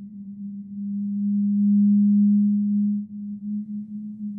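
A low, sustained drone from a film score: a single steady tone that swells about a second in, holds loudest, then drops back suddenly and wavers near the end.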